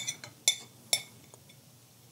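Metal tweezers clinking as they pick at and tap against a hard surface: three light clicks about half a second apart, each with a short ring, then a couple of fainter ticks.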